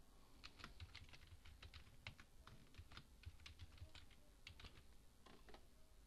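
Faint typing on a computer keyboard: a run of irregular key clicks, several a second, that stops shortly before the end.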